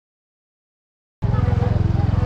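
Dead silence that cuts abruptly, just over a second in, into loud street sound: a motor vehicle engine running close by with a low, fast pulsing rumble, and faint voices under it.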